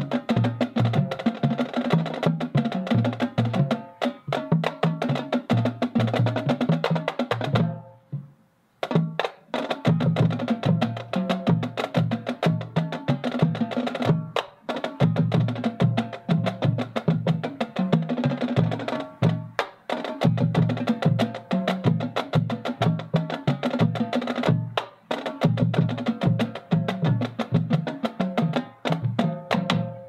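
High school marching band playing its field show, with drums and mallet-struck percussion to the fore in a driving rhythm. The music breaks off briefly about eight seconds in, then resumes, and it cuts off at the very end.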